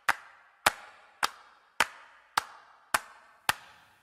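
Song intro: a single sharp percussion hit repeated on a steady beat, seven times, a little under twice a second, each one ringing out in reverb before the next.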